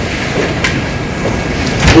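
Steady rumbling room noise with no speech. There is a faint knock about two-thirds of a second in and a louder thump just before the end.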